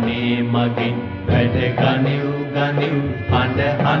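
A Sinhala song playing: a solo voice sings long held notes over instrumental backing.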